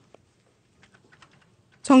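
A few faint, short clicks during a pause: one just after the start and a small cluster about a second in, much quieter than the voice.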